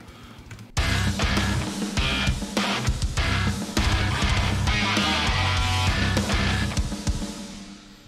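Djent metal mix playing back: distorted rhythm guitars with bass guitar and a punchy kick drum, the bass sidechain-compressed so it ducks under each kick. It starts about a second in and fades out near the end.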